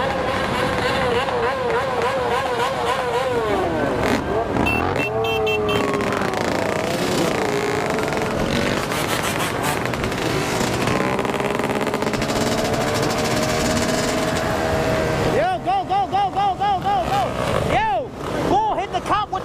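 Dirt bike and ATV engines running and revving close by in a moving pack, their pitch wobbling and gliding up and down. Over the last couple of seconds one engine is revved in quick, repeated throttle blips.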